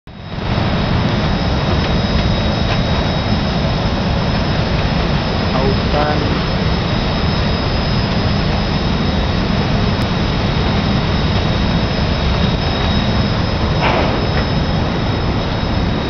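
Offshore gas platform machinery running: a loud, steady deep rumble with two thin, steady high whines held over it.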